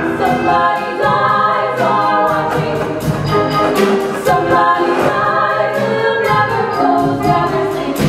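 A musical-theatre song sung by a group of voices together over instrumental backing, running steadily throughout.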